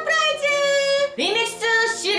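A woman singing a short jingle-like phrase in a high, bright voice: one long held note for about the first second, then a second, shorter sung phrase ending on another held note.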